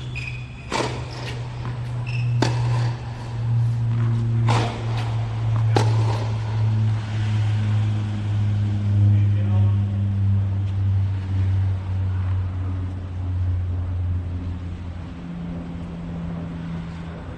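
Tennis ball struck by rackets in a short rally: four sharp hits about two seconds apart in the first six seconds. Under them runs a loud, steady, low mechanical hum that slowly drops in pitch.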